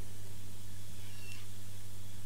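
Steady low electrical hum with tape hiss from an old cassette recording, and a faint, brief high squeak about a second in.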